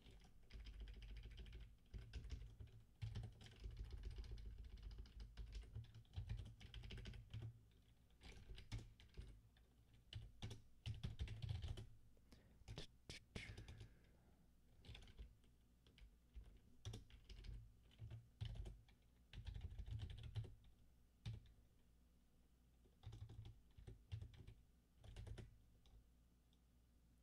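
Faint typing on a computer keyboard, in irregular bursts of keystrokes with short pauses between them.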